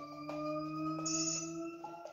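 Several sustained electronic tones held together and rising slowly in pitch, with a higher shimmering tone joining about halfway through.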